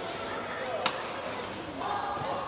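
A badminton racket strikes a shuttlecock once, a sharp crack a little under a second in, over the echoing background of a busy sports hall with other games and voices.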